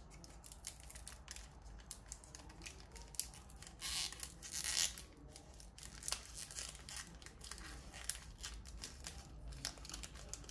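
Crinkling of a foil booster-pack wrapper, with two short tearing rips about four seconds in and light clicks and rustles of trading cards being handled throughout.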